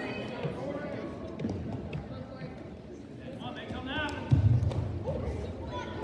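Scattered spectator voices and calls in a school gym, with a sudden low thump about four seconds in.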